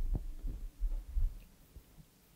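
A few low, muffled thuds of handling noise at the lectern, picked up through the podium microphone, about four bumps in the first second and a half.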